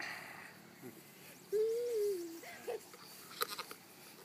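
A person's drawn-out vocal call, one held note that rises slightly and then falls, followed by a couple of short vocal sounds and a few faint clicks near the end.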